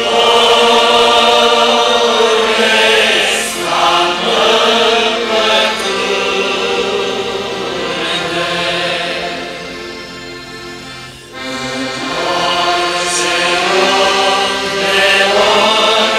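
Many voices singing a slow Romanian Orthodox hymn together in long held phrases. The singing thins out around ten seconds in and breaks off briefly, then the next phrase comes in strongly.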